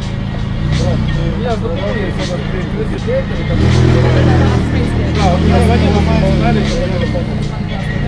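People talking over loud, bass-heavy music from a sound system; the bass swells about three and a half seconds in.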